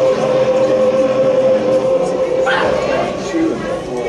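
Indistinct spectator voices close to the microphone. One voice holds a long steady note for about the first two and a half seconds, and a brief sharper sound follows.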